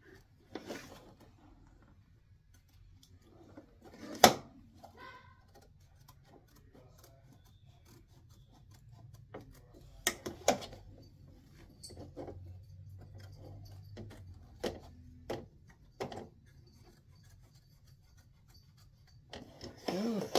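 Small scissors snipping patch fabric close to an embroidered stitch line, with the fabric rustling as it is handled. Scattered snips and clicks, the sharpest about four seconds in, over a faint low hum.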